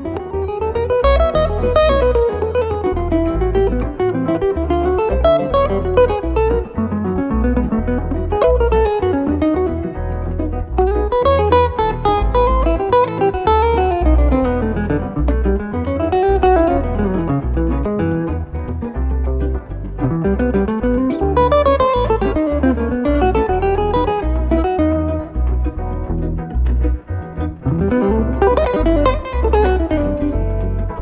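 Jazz guitar duo played live: an archtop hollow-body electric guitar and a solid-body electric guitar together, with fast single-note runs rising and falling in pitch over low bass notes.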